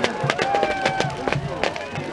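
Big wooden bonfire crackling, with sharp irregular pops, under the voices and calls of a crowd standing around it.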